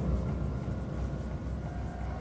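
A chamber ensemble playing a low, dense rumbling passage, with faint held higher notes above it.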